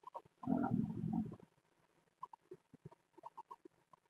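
A man's drawn-out hesitation 'um', about a second long, starting half a second in, followed by a few faint scattered clicks.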